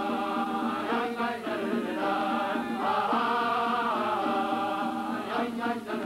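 Voices chanting a slow Jewish liturgical melody, long held notes that bend and slide between pitches.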